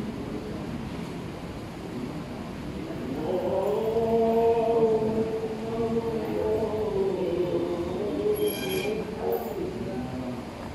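A man's voice chanting one long, slowly wavering note, starting about three seconds in and ending near the end, over a steady background hum. A brief high-pitched ring comes just before the chant ends.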